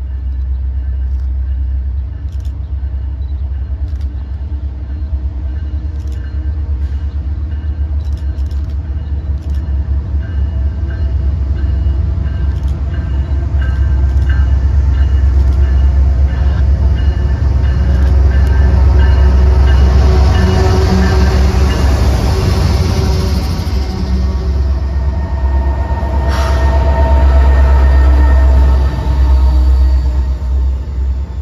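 A diesel-hauled freight train approaches and passes close by. The locomotives' engines and rolling noise grow steadily louder, peaking as the engines go by, and then the freight cars rumble and clatter past. A strong low rumble runs under it all.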